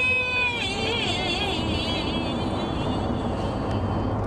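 A pop song's vocal: a held sung note that ends about half a second in, then a wavering high vocal line, over a dense, steady backing.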